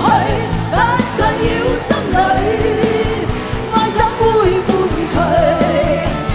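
Two women singing a Cantonese pop ballad live as a duet with a backing band, holding long sung notes over a steady drum beat.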